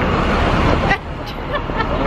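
City street noise: wind rumbling on the handheld camera's microphone for about the first second, cutting off suddenly, then steady traffic noise with distant voices.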